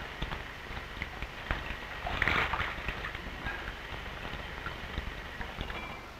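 Quiet stretch of an old film soundtrack: steady hiss with scattered light clicks and soft rustling handling sounds, and a brief swish about two seconds in.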